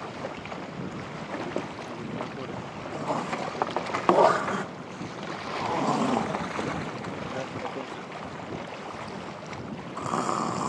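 Wind buffeting the microphone over a steady wash of open sea, with a brief louder noise about four seconds in.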